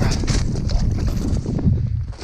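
Wind buffeting the microphone on open ice: a steady low rumble, with a few brief rustles near the start.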